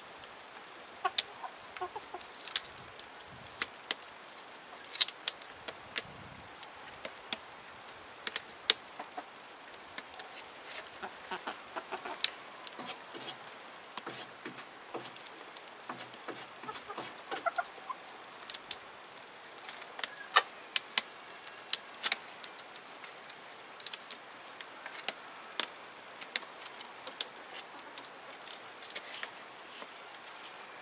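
White chickens pecking at fruit and vegetable scraps on a wooden feeding table: an uneven scatter of sharp pecking taps, with soft clucking now and then.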